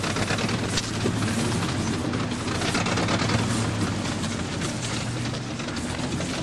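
A vehicle engine runs with a steady low hum under a dense, clattering noise.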